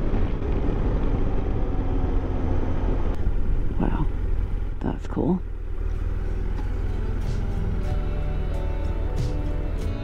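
BMW F700GS parallel-twin motorcycle running at road speed, its engine and wind noise a steady low rumble. Background music comes in near the end.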